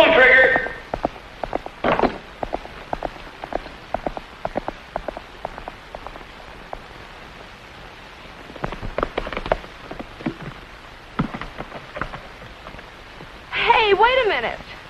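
Irregular clicks and knocks from a halted horse-drawn stagecoach and its team, over the steady hiss of an old film soundtrack. A short voice sounds at the very start and again just before the end.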